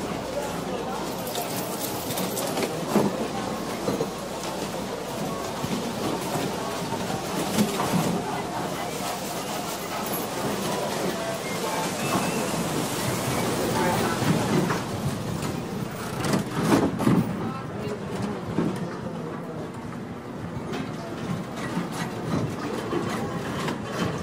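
Casino floor ambience: a steady wash of crowd chatter mixed with slot machine sounds and clatter, with a few louder clatters along the way.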